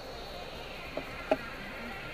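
Car-cabin background noise in a vehicle stopped in traffic, with a faint steady high-pitched whine, broken by two sharp clicks about a third of a second apart, the second much louder.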